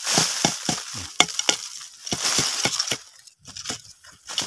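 Dry bamboo leaf litter and twigs crackling, crunching and snapping, with a quick run of sharp cracks several times a second.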